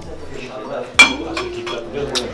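A single sharp clink about a second in, with a short ring after it, as a clear dome cover is lifted off a serving platter and knocks against the dish.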